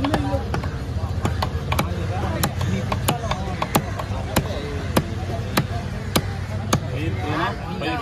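Cleaver chopping through fish on a wooden chopping block: sharp, evenly paced knocks about every 0.6 seconds, stopping shortly before the end.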